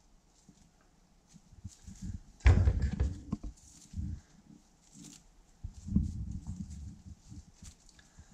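Hands unwrapping a piece of dried meat from its gauze cloth wrapping, with dull bumps and knocks as it is handled on a wooden worktop. These come a few at a time after the first two seconds.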